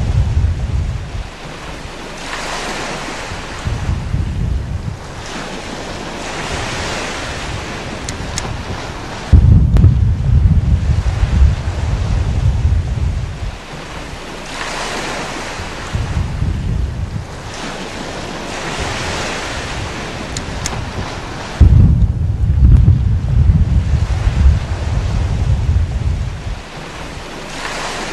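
Underwater water noise: a rushing hiss broken by stretches of heavy low rumble a few seconds long, loudest from about nine seconds in and again from about twenty-two seconds in.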